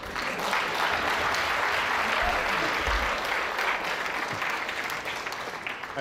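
Audience applauding steadily in a large room, a little softer near the end.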